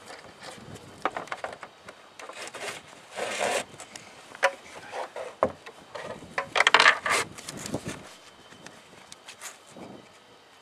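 Nylon mounting strap being threaded and pulled against a hard plastic ATV rack and speaker housing: irregular rubbing and scraping with small handling knocks, the loudest two rasps about three and a half and seven seconds in.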